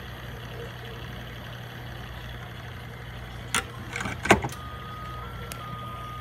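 Steady low hum and faint hiss from the ham radio setup, broken by a few sharp clicks around the middle and joined by a faint steady beep-like tone near the end, as the Echolink echo test is about to play the transmission back over the radio.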